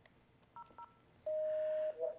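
Desk telephone keypad: two short touch-tone beeps in quick succession, then a steady single tone held for about two-thirds of a second.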